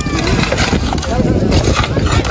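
Several people talking over one another while pickaxes and shovels strike and scrape into stony ground, over a steady low rumble.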